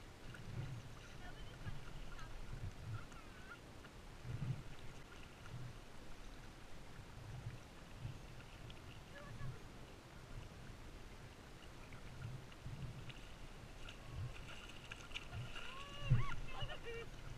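Kayak paddle strokes and water slapping against a plastic kayak hull, heard as soft, irregular low thumps.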